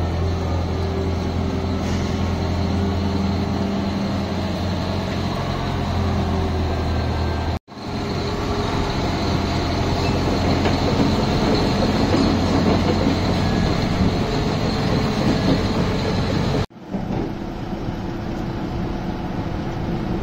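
Liebherr L556 Xpower wheel loader's diesel engine running as the machine drives and manoeuvres, a steady low drone with a busier, louder mechanical noise in the middle part. The sound breaks off abruptly twice, about a third of the way and again near the end, where the footage is cut.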